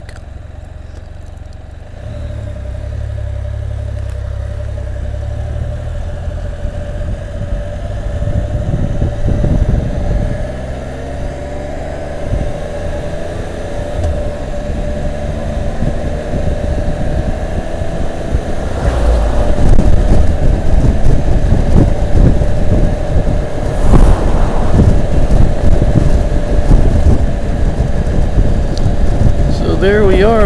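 Rotax three-cylinder engine of a 2015 Can-Am Spyder RT three-wheeled motorcycle pulling away and accelerating up through the gears, with wind rushing over the microphone and growing louder as speed builds.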